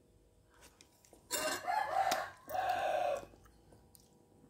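A rooster crowing once, in two drawn-out parts, starting about a second in and lasting about two seconds.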